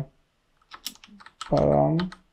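Typing on a computer keyboard: a quick run of keystrokes about a second in. Near the end a drawn-out hesitation sound ("uhh") from a man's voice.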